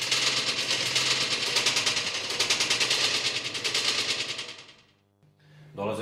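A fast, even rattle of sharp clicks, like machine-gun fire, that starts suddenly and fades away about four to five seconds in.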